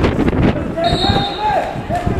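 Shouting voices at a live football match, with a sharp thud near the start typical of the ball being kicked. The calls rise and fall in pitch between about one and two seconds in.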